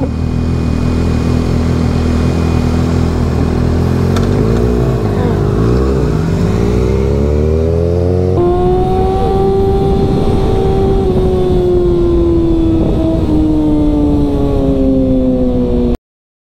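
Inline-four sportbike engines idling at a stop, the note dipping and rising a few times midway; about eight seconds in the bike pulls away and its engine note climbs a little, then slowly falls.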